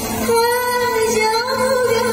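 A woman singing a dangdut song into a microphone with music accompaniment: about a third of a second in she starts one long held note that wavers in pitch, over a steady low backing note.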